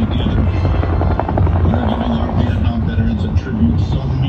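A Bell UH-1 'Huey' helicopter flying overhead, its rotor beating rapidly and steadily, with a voice and music underneath.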